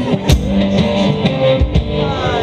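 Live one-man-band blues rock: a hollow-body electric guitar playing an instrumental passage over kick drum beats pedalled by the same player.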